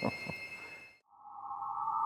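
A man's short laugh over a high steady electronic tone, then, after a brief dip, an electronic tone of a logo sting that swells for about a second and cuts off abruptly.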